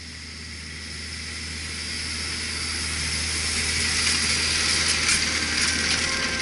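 Tractor engine running steadily under load as it pulls a precision seed drill toward the microphone. The sound grows louder through the first four seconds as it approaches, with a rising hiss from the drill's blower fan as it passes close.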